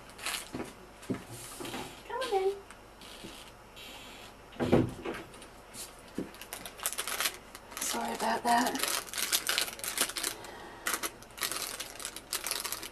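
Household sounds away from the microphone: a short faint voice about two seconds in, a single thump near the middle, another brief faint voice, then a run of clicks and rustles in the last few seconds.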